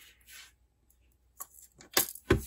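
A few small, light clicks, bunched near the end, as seed beads are handled and strung onto thin beading wire, after a faint soft rustle at the start.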